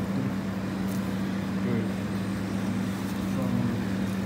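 Restaurant room tone: a steady low mechanical hum, with faint voices talking in the background.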